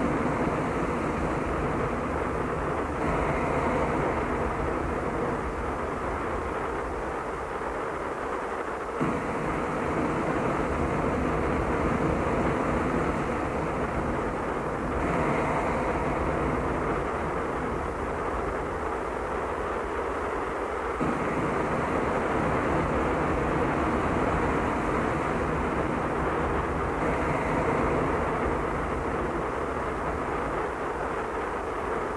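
Death-industrial drone from a 1996 cassette master: a dense, steady wall of low hum and noise, its texture changing every six seconds or so in a repeating loop.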